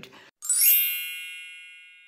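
A bright chime sting: one stroke of many high ringing tones about half a second in, fading away over about two seconds.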